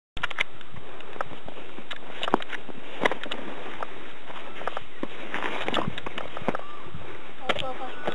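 Irregular footsteps and knocks of someone running with a handheld camera over rock and through bracken, over a steady hiss. Brief faint voices come in past the middle.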